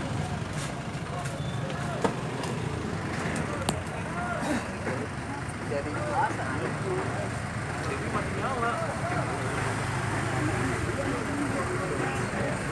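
Busy street-market ambience: indistinct chatter of several people over the steady low hum of a motor vehicle's engine, with two sharp knocks in the first few seconds.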